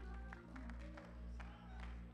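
Quiet church organ backing music: low sustained bass notes pulsing about twice a second, with light clicks over them.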